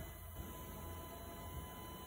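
Low steady background hum with a few faint steady high tones above it. The saw's motors are not running.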